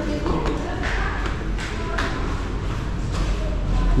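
Footsteps on a hard tiled floor, a step roughly every half second, over a steady low rumble of wind or handling noise on the microphone.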